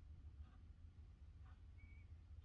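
Near silence: faint surface noise of a 78 rpm shellac record in its lead-in groove on an acoustic gramophone, a low rumble with a soft tick about once a second. A brief faint high whistle-like tone comes near the end.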